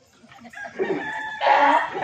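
A rooster crowing: a held high note rising into a loud final stretch about one and a half seconds in.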